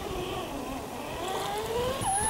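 Electric motor and gearbox of an Axial SCX10 RC crawler whining as it drives slowly up out of a muddy puddle, the whine rising in pitch through the second half.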